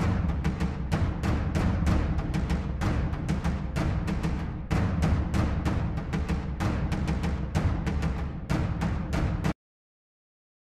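Sampled cinematic percussion, bass drum and tom-toms from the Drums of War library, playing a fast, driving pattern of rapid hits with heavy low end. It cuts off abruptly about nine and a half seconds in as playback stops.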